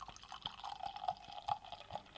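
Imperial stout poured from a glass bottle into a snifter glass: a faint, steady pour of liquid into the glass with a few small splashes.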